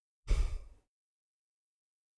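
A man's brief sigh, an exhale blown close into a studio microphone, lasting about half a second.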